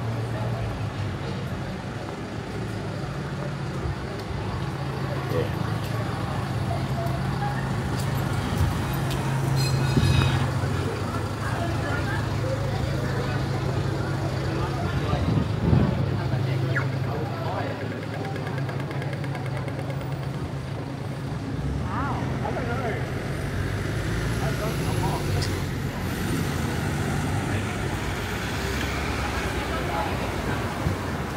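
Busy city street: traffic engines running steadily on the road, with passers-by talking nearby on the footpath.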